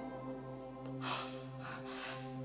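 Soft background music holding steady sustained notes, with two short breathy gasps, one about a second in and one just before the end.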